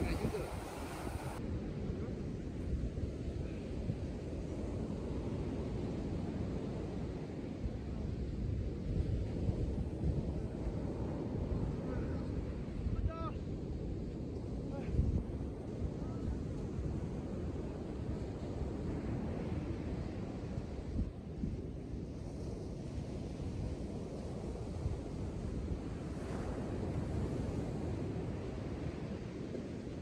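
Sea surf breaking and washing up on a sand beach, with wind rumbling on the microphone.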